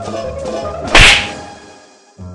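Big-band accompaniment with brass, cut by a single loud, sharp percussive crack about a second in that fades away over most of a second, after which the music breaks off briefly.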